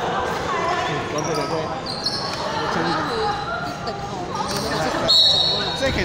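Basketball bouncing on a hardwood court, with short high sneaker squeaks about two seconds in and again near the end, under voices in a large echoing hall.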